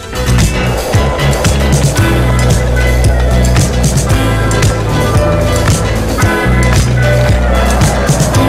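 Music with a bass line and drums, laid over skateboard wheels rolling on asphalt.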